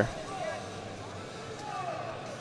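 Faint, distant voices over steady background noise in a big, mostly empty arena.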